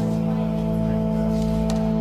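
Background music holding a steady, sustained chord.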